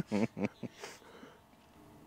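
Men's laughter trailing off in the first half-second or so, then a short hiss and near quiet.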